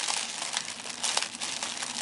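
Tissue paper being crinkled and rustled by hand as it is pulled open, with a run of sharp crackles.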